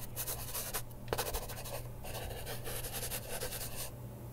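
Scratchy text-scroll sound effect playing as a caption's words are written out on screen: a rapid, irregular run of scratches and clicks.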